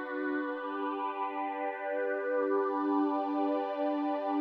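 Logic Pro X 'Bright Synth Strings' synthesizer patch playing on its own, holding one sustained chord with a slight warble.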